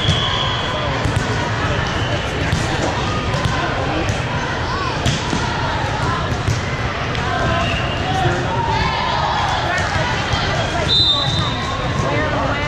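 Busy multi-court volleyball hall: a constant din of many voices with scattered ball hits and bounces. Short whistle blasts sound at the start and again about eleven seconds in, the second one the referee's signal for the serve.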